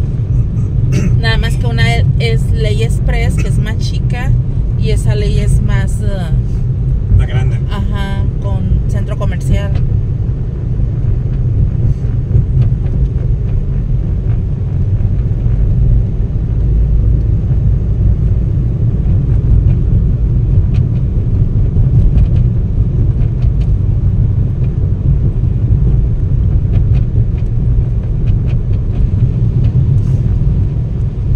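Steady low rumble of a car driving at city speed, engine and road noise heard from inside the cabin.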